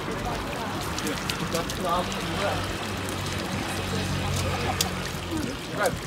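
Stone village fountain's spout running into its trough, under scattered chatter and laughter of bystanders. A steady low hum sounds from about a second in until near the end.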